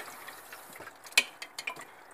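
A metal teaspoon clinking against a glass jar while caustic soda is stirred into cold water: one sharp tick a little over a second in, then a few lighter ticks. A tap trickles faintly underneath.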